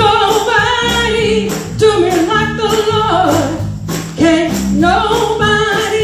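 A woman singing a gospel song solo into a microphone, her held notes bending up and down, over live drum-kit accompaniment with steady low bass notes underneath.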